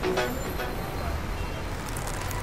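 Low, steady rumble of city street traffic, after a brief pitched sound that fades out in the first half-second.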